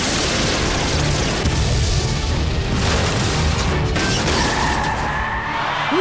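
Cartoon sound effect of two laser blasts colliding: a sustained, noisy boom with deep rumble, mixed with dramatic action music.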